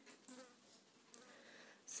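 Quiet room noise in a pause between speech, with one short sharp click a little over a second in.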